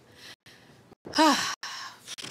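A person sighing, a soft breathy exhale, with a single spoken word just after it.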